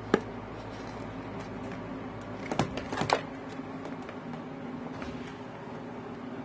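Light clicks and taps of a small plastic toy glasses frame being handled and fitted against cardboard pieces: one sharp click just after the start and a few more around the middle, over a steady low hum.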